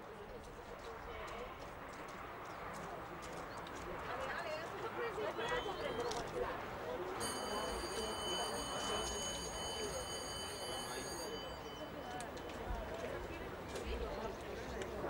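Hoofbeats of a horse cantering on sand arena footing, under the murmur of background voices. For about four seconds in the middle a steady high-pitched electronic whine sounds over it and then cuts off.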